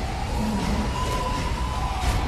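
A siren wailing, its pitch rising slowly over about a second and a half, over a steady rumbling noise.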